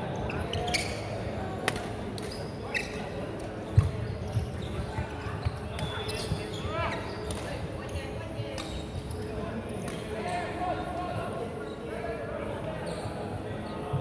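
Badminton rally on a wooden court in a large hall: sharp clicks of rackets striking the shuttlecock, a heavy thump from the floor about four seconds in, and short shoe squeaks a little later, over a murmur of voices.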